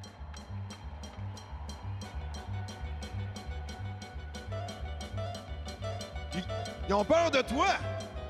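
Upbeat music with a steady beat of about four ticks a second over a repeating bass line. A man's voice is heard briefly near the end.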